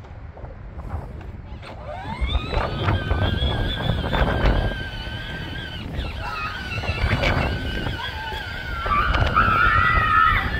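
Electric motor and gearbox of a battery-powered John Deere Gator ride-on toy whining. The whine rises about two seconds in as the toy picks up speed, then holds steady over a low rumble from the tyres on grass, with a few knocks as it bumps along.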